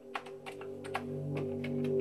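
Soft ambient background music of sustained low notes, with a scatter of irregular light clicks over it.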